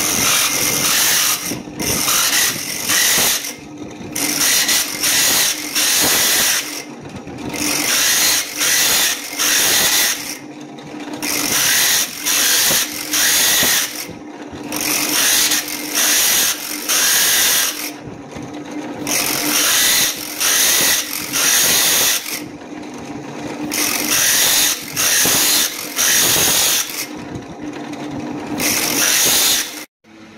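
Drill press motor running with a steady hum while its cylindrical core bit (hole saw) cuts a round disc out of a fossil giant clam shell blank. It is fed in short repeated plunges, a loud gritty grind each time the bit bites into the shell, about once a second in runs with brief quieter pauses.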